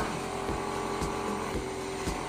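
Small electric cotton candy machine running, its motor spinning the heating head with a steady whir.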